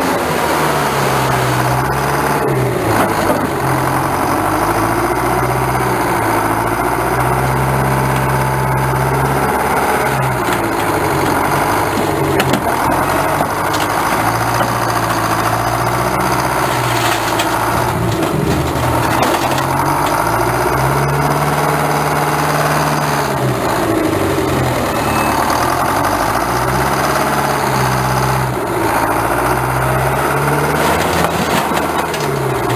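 Engine of a car-crushing machine running and revving up and down over and over as its hydraulic arms are worked, with a few knocks.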